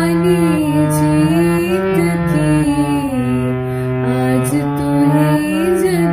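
Harmonium playing the shabad melody in held, reedy notes that step from one to the next over a low sustained note, with a voice following the melody without clear words.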